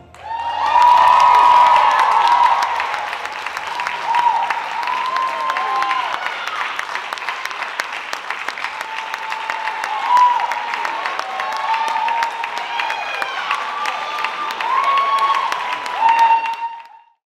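Audience applauding, with voices calling out and cheering over the clapping.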